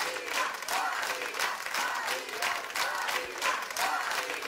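Audience applauding, with scattered voices calling out over the clapping.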